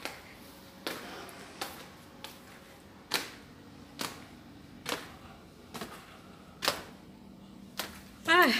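Footsteps climbing tiled stairs at a steady pace, about ten sharp taps in eight seconds.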